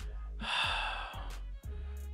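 A person drawing a long, audible breath close to the microphone, lasting about a second.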